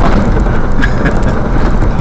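A vehicle driving on a gravel road: a loud, steady rumble of tyres on gravel and engine, with a few sharp ticks about a second in.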